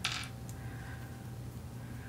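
A brief metallic clink as the small magnetic USB cable tips are picked up off the desk, followed by a faint click about half a second in.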